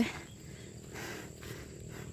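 Faint rural outdoor ambience with a steady high-pitched insect trill over low background noise.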